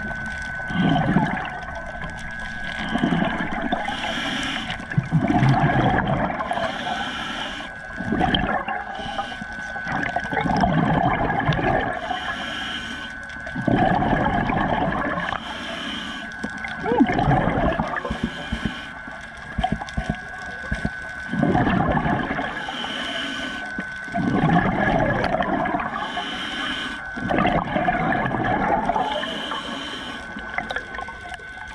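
Scuba diver breathing through a regulator underwater. Each breath is a hiss on the inhale followed by a rush of exhaled bubbles, about every three to four seconds, over a steady thin high tone.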